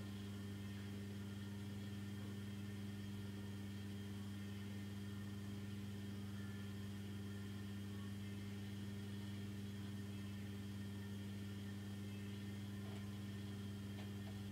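Steady low electrical hum with a faint hiss underneath, unchanging throughout: mains hum in the recording.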